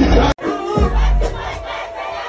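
Loud, bass-heavy dancehall music from a live sound system that cuts off abruptly about a third of a second in, followed by a crowd shouting and cheering over music.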